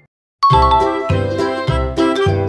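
About half a second of silence, then a short chime and cheerful background music for children that starts with a steady beat.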